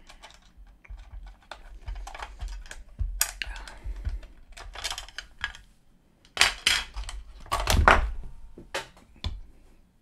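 Plastic clicking and clattering as the battery compartment of a 1970s portable transistor radio is prised open and its Duracell batteries are pulled out. The loudest knocks and rattles come about six to eight seconds in.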